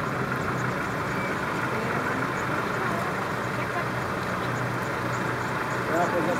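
Safari vehicle's engine idling steadily, a low even hum.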